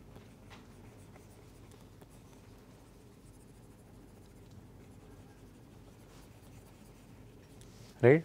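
Faint scratching and light ticking of a stylus on a drawing tablet as marks are drawn and shaded, over quiet room tone.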